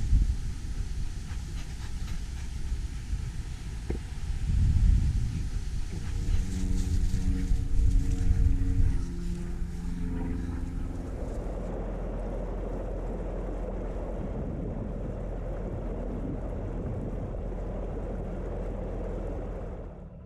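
Wind buffeting the microphone in uneven gusts, over a steady low rumble that evens out to a constant noise about halfway through.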